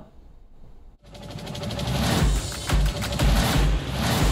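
Short music sting for a segment's title graphic: about a second of near quiet, then a rising swell with a run of deep bass hits, about two a second, loudest near the end.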